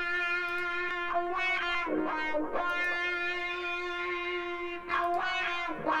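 Electric guitar solo with wah and echo effects, playing long sustained notes with pitch slides about two seconds in and again near the end. It plays back through Logic Pro's Dolby Atmos binaural renderer while the track's distance setting is switched between near and far.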